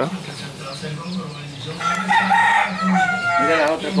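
A rooster crowing once, about two seconds in: one long call that glides down in pitch at its end.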